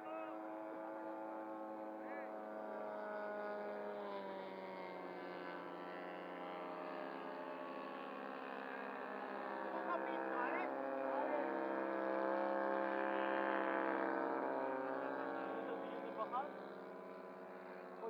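Engine of a radio-controlled Fokker scale model plane running steadily in flight, its pitch shifting a little as it manoeuvres; it grows louder about ten seconds in as the plane passes closer, then fades away.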